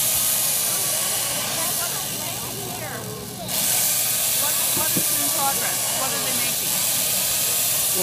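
Chainsaw cutting into a block of ice, a steady loud hiss of shaved ice. It eases off about two seconds in and bites back in about a second and a half later.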